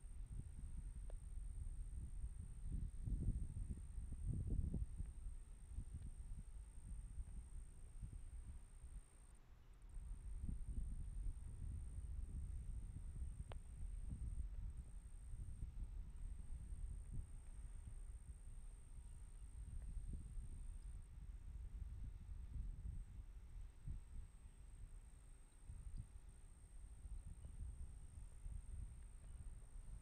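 Wind buffeting an outdoor microphone: a low, uneven rumble that surges and eases, over a faint, steady high-pitched whine.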